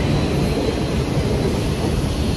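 Subway train running past the platform of an underground station: a steady noise of wheels and motors.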